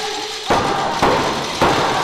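Three sudden heavy thuds about half a second apart in a wrestling ring, each followed by a noisy echo from the hall.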